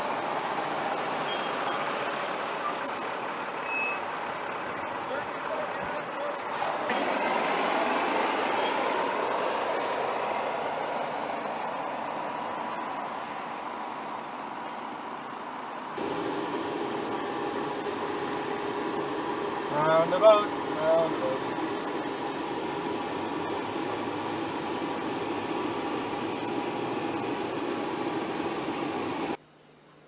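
LAV III eight-wheeled armoured vehicles' diesel engines running and tyres rolling as a column passes close by. About halfway the sound changes to steady vehicle running noise from a ride through town, with a brief louder burst about two-thirds through.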